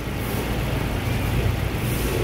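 Suzuki four-cylinder petrol engine idling steadily with the bonnet open, running on a newly replaced ignition coil pack after being troubleshot for a misfire.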